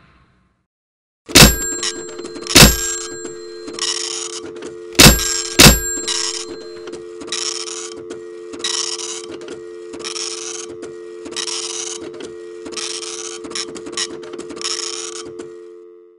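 Telephone line sound: four loud clunks like a handset being handled and hung up, then a steady dial tone that runs on with bursts of hiss about once a second.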